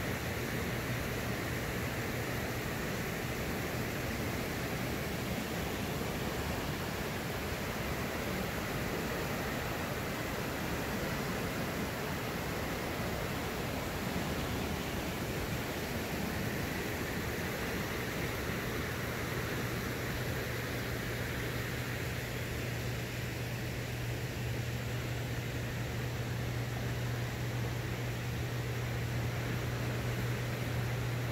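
Steady rushing of the fast current in the Caney Fork tailwater below a hydroelectric dam, with a low steady hum underneath that is weaker in the middle and stronger again in the second half.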